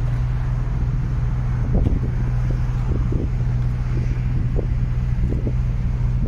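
A steady low engine hum that does not change, with soft, irregular thuds of footsteps on asphalt and light wind on the microphone.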